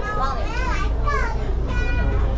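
A young child's high voice calling and chattering, ending on a briefly held note, over the steady low drone of the ferry's engine.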